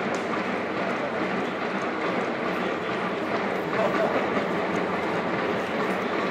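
Football stadium crowd: a steady din of many voices from the stands.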